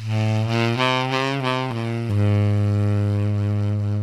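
Tenor saxophone played with a soft subtone in its low range: a short phrase of a few quick low notes, then a long held low note from about two seconds in.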